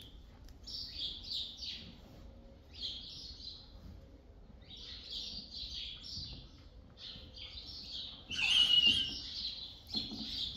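Small birds chirping in short bursts every second or two, with one louder, harsher burst about eight and a half seconds in.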